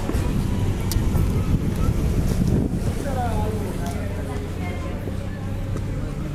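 People talking in the background over a steady low rumble, with a few light clicks.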